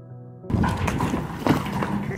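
Soft background music cuts off about half a second in. It gives way to a wheelbarrow being pushed over frozen, icy ground: rattling and a run of knocks and crunches, with footsteps in boots.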